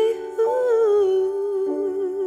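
Female jazz vocalist holding one long sung note with a slow vibrato over soft piano accompaniment, the piano moving to a new chord about three-quarters of the way through.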